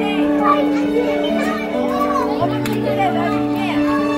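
Young children's voices chattering and calling over background music of sustained, slowly changing chords.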